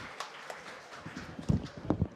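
Audience applause dying away to a few last claps, then two loud, dull knocks close together near the end.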